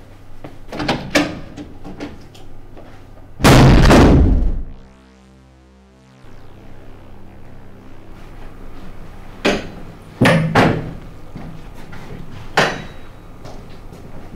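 A door slams shut with a loud bang about three and a half seconds in. Scattered lighter knocks come before and after it.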